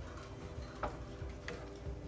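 Wooden spatula stirring a thick pav bhaji vegetable mash in a nonstick pan, with two sharp taps of the spatula against the pan a little under a second in and again about half a second later, over a low steady rumble.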